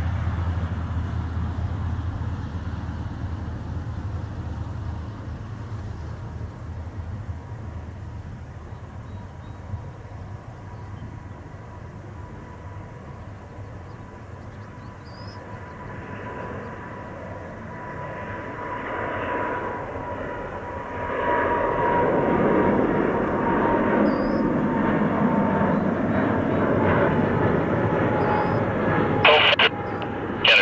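Boeing 777 with GE90 engines at takeoff power, rolling down the runway and climbing away. The engine noise and a steady whine grow louder over the second half of the takeoff and are loudest in the last third as the airliner lifts off and passes.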